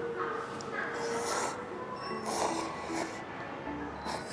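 Instant cup noodles being slurped twice, two short noisy slurps, over soft background music with held notes.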